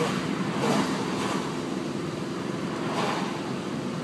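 Steady road noise inside a moving car's cabin: tyre and wind rush at driving speed.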